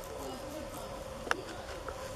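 A faint, steady insect buzzing in the open air, with one sharp click about two-thirds of the way through.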